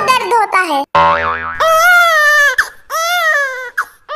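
A cartoon 'boing' sound effect about a second in, followed by two long, very high-pitched cartoon-voice cries, each rising then falling, like a newborn cartoon baby crying.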